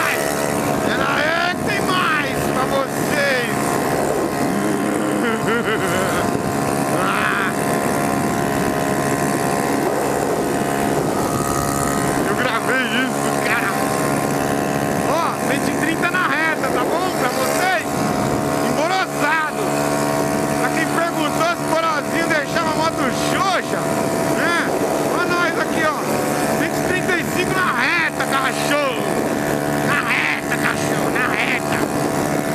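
Yamaha Factor 150's single-cylinder engine running at steady high revs near top speed, its pitch holding even, with wind rushing past.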